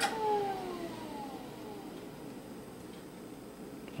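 A 286 desktop PC switched off with a click, then a falling whine as its MiniScribe 8051A hard drive spins down, fading out over about two seconds.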